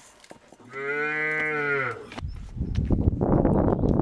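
A cow moos once, a single call of about a second. Then, from about two seconds in, water pours in a loud rush from a plastic jerrycan into a plastic bowl.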